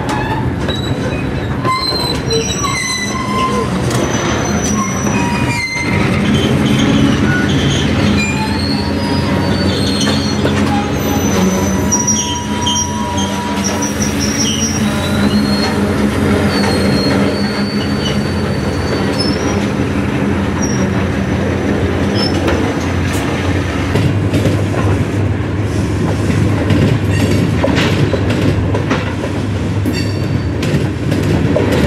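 Freight train of covered hopper cars rolling past close by: a steady rumble of steel wheels on rail, with high wheel squeals that slide in pitch through the first two-thirds. Short clicks of wheels over rail joints stand out more near the end.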